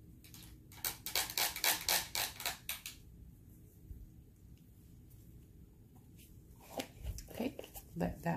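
A quick run of sharp clicks, about five a second for two seconds starting about a second in, with a few softer handling sounds near the end.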